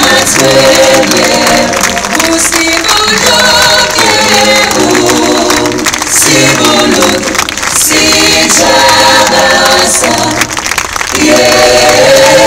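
Music with a group of voices singing, choir-like, in phrases with short breaks between them.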